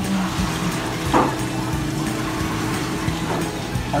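Steady rushing noise of water circulation and pumps from a shop's rows of marine aquarium tanks, with a low hum and a brief knock about a second in.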